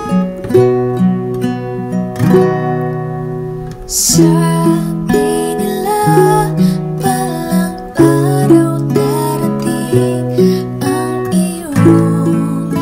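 Ukulele and acoustic guitar playing together, plucked and strummed chords ringing in a slow accompaniment. A woman's singing voice comes in about four seconds in.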